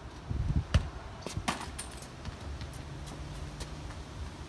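A football being punted: a sharp thud of the foot on the ball about three quarters of a second in, followed by a few softer knocks.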